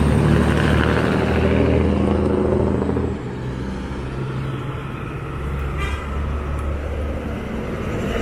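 A heavy flatbed truck's engine passing close by, a deep steady drone that falls away about three seconds in, leaving lower road-traffic noise as more trucks approach.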